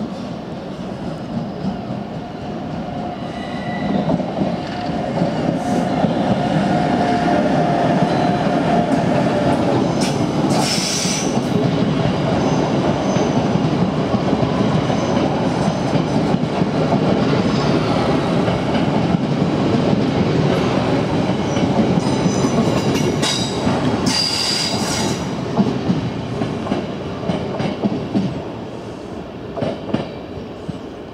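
Electric passenger train passing close by on the platform track, its wheels rolling and clattering on the rails. The sound builds about four seconds in, stays loud, and fades near the end, with two brief high-pitched squeals, about ten and about twenty-four seconds in.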